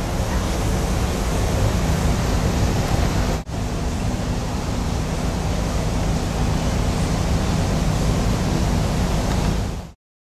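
Wind blowing over a camcorder microphone on a cruise ship's open top deck: a steady rushing rumble, broken by a brief gap about three and a half seconds in, and cut off just before the end.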